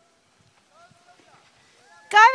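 Near silence with faint, distant voices calling out briefly around the middle.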